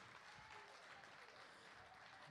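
Near silence: faint, even applause from a congregation in a hall.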